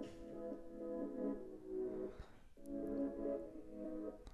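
Quiet electronic music playback of a work-in-progress sting: sustained chords that break off about two and a half seconds in and come back a moment later.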